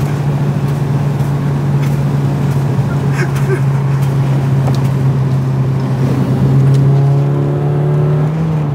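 The engine-swapped BMW E36's engine droning steadily under way. Its note rises a little near the end.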